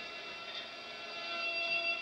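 A quiet, sustained electronic organ chord, held steady as the instrumental introduction of a hymn closes, and stopping near the end.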